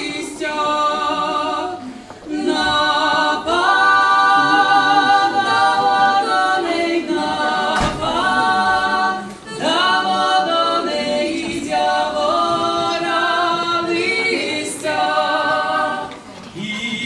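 A Lemko folk trio of one male and two female voices singing a cappella in sustained phrases, pausing briefly twice.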